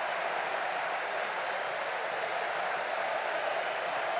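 Steady crowd noise of a packed football stadium: an even din with no single calls or whistles standing out.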